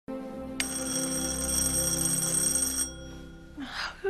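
Doorbell ringing, one steady ring about two seconds long that cuts off, over a low steady music tone.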